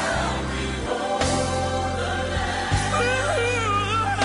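Choir singing a gospel song, the voices held with vibrato over a steady bass accompaniment.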